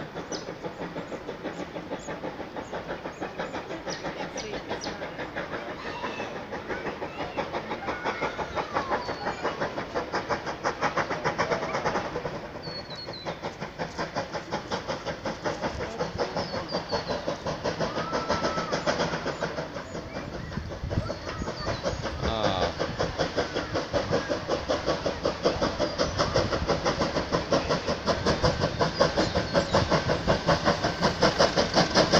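Steam locomotive working, its exhaust beating in a quick, even rhythm that grows louder toward the end as it approaches.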